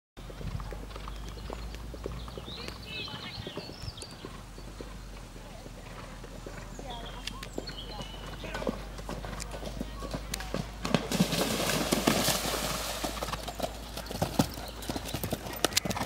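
A horse's hoofbeats on a dirt track as it canters towards and past, loudest about eleven to thirteen seconds in as it goes by close.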